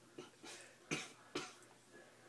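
A man coughing on a mouthful of dry cinnamon powder, which catches in the throat: a few short coughs, the two loudest about a second in and just after.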